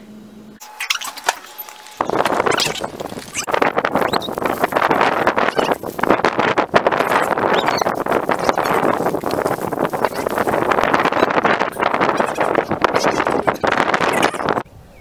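Water from a garden hose splashing over long hair and onto the ground: a steady, crackly spattering that starts abruptly about two seconds in.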